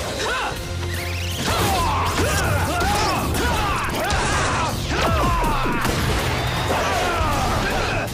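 Sound effects from a TV action fight: crashing impacts and an explosion with swishing, sweeping effect noises, over background music.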